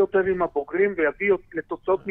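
Speech only: a person talking in Hebrew, in quick unbroken syllables.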